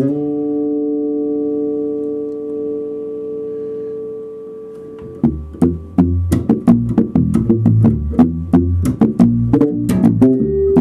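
Skjold six-string electric bass played through an amp: a chord rings out for about five seconds, slowly fading. It is followed by a fast run of crisp, quick plucked notes.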